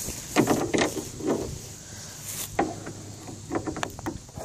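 Scattered knocks, clicks and rattles as a bungee cord is hooked through the back of a lawn chair in a lawn mower trailer, mixed with handling noise on the phone's microphone.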